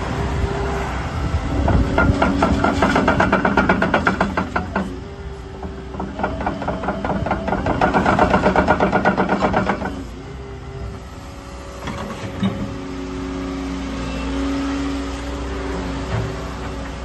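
Volvo EC140EL crawler excavator tracking, its steel track chains clattering in a fast, even rhythm over the steady running of its diesel engine. The clatter comes in two spells and stops about two-thirds of the way through, leaving the engine running on.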